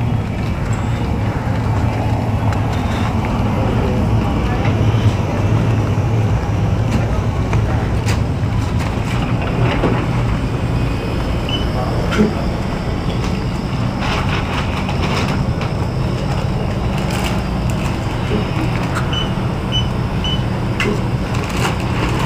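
Steady rumbling handling and rubbing noise on a handheld phone's microphone while walking through a store, with a few faint clicks and three short high beeps near the end.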